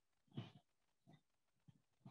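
Near silence: room tone, with one short faint sound about half a second in.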